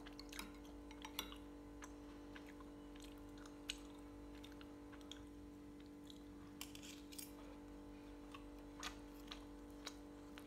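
Quiet eating sounds: faint chewing and scattered light clicks of a metal spoon against a ceramic rice bowl, over a steady low hum.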